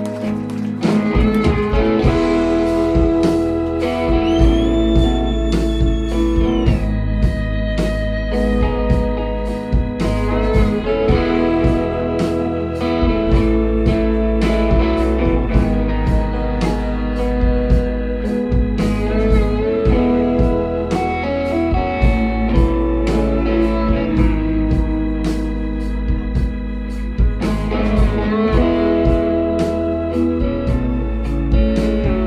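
A live rock band with drums, bass, electric guitar and pedal steel guitar playing a song, the full band coming in about a second in. A pedal steel slides between notes a few seconds in.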